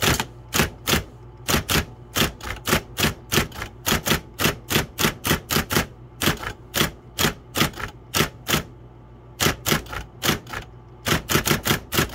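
Brother Correct-O-Ball XL-I electric ball typewriter typing: its type ball strikes the paper in quick uneven runs of about three to four a second, with two short pauses, over the steady hum of its running motor.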